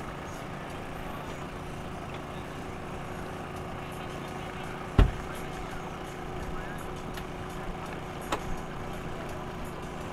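Twin Yamaha 225 outboard motors idling steadily while the boat moves slowly off the dock. A single sharp thump comes about halfway through, followed later by a couple of fainter knocks.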